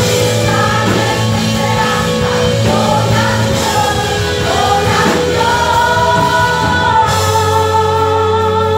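Live church worship band: several voices singing together over electric guitars, bass and drums, with long held notes under the vocal line.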